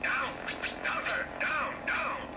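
Cartoon soundtrack heard through a TV speaker: a high, voice-like sound that slides down in pitch four or five times, over faint music.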